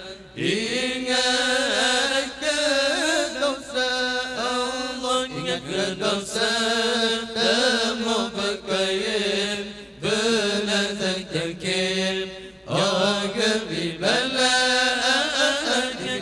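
A group of men's voices chanting together into microphones in a long, melismatic Islamic devotional style, in phrases with short breaks for breath about ten seconds in and again a couple of seconds later.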